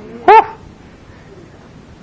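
A single short, loud, high-pitched yelp about a quarter second in, its pitch rising and falling.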